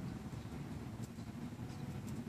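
Steady low outdoor rumble with a couple of faint ticks.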